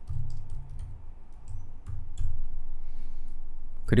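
Computer keyboard typing: a run of separate keystrokes as shell commands are entered, over a low steady hum.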